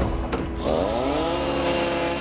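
Electric miter saw starting up: its motor whine rises in pitch over about half a second, then holds steady.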